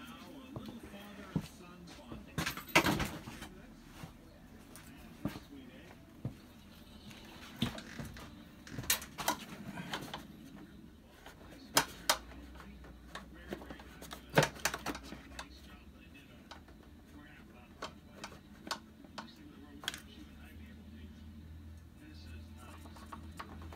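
Scattered clicks and knocks of a plastic washer fluid reservoir and a marker being handled against the truck's inner fender, the loudest knocks about three seconds in and again near twelve and fourteen seconds. A faint low hum comes in about halfway through.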